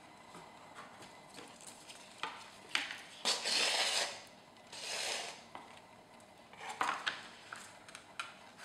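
Waxed linen thread being pulled through the punched holes of a paper signature and card cover, with paper rustling and small taps of handling; two long hissy pulls stand out, about three seconds in and again about five seconds in.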